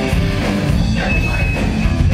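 Punk rock band playing live, loud: electric guitar and drums. A thin, steady high tone sounds briefly about a second in.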